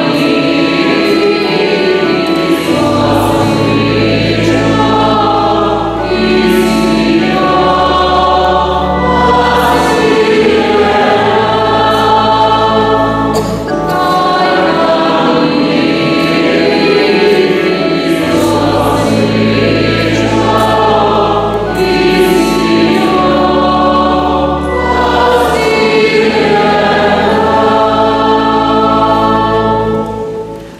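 Church choir singing a hymn, with sustained low bass notes underneath that change every few seconds.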